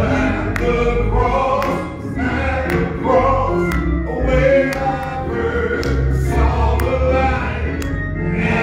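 Gospel singing led by a man's voice on a microphone, backed by keyboard, with sharp drum or cymbal hits about once a second.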